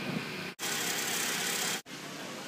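A steady running engine in short cut-together clips of outdoor ambience. About half a second in, a louder hissing stretch lasts just over a second and ends abruptly.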